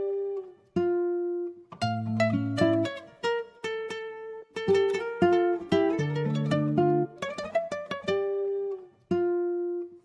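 Music: a plucked guitar playing picked chords and single notes in short phrases, each note ringing and decaying, with brief pauses between phrases.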